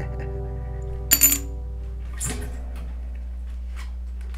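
A guitar's last chord rings out and is cut off by a knock a little after two seconds in, as the guitar is handled. About a second in there is a short, bright metallic jingle, the loudest sound, followed by a few faint clicks.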